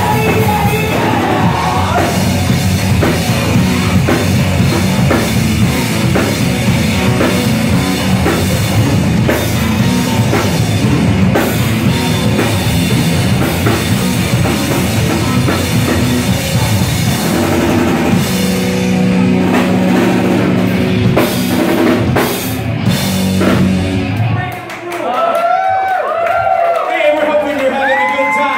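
Rock trio playing live: electric guitar, bass guitar and drum kit in a loud instrumental passage without vocals. The band stops about a second and a half before the end, and the crowd starts cheering and shouting.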